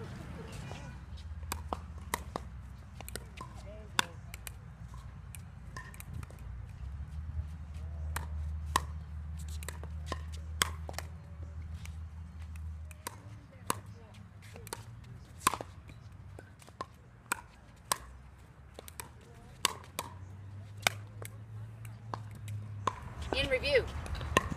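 Pickleball drill: sharp, irregular pops of paddles striking a plastic pickleball, with ball bounces on the hard court, roughly one or two a second, over a steady low background rumble.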